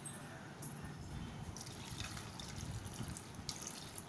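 Water poured from a cup into an aluminium pressure cooker onto chopped chayote and chana dal: a quiet, steady trickle and splash of liquid.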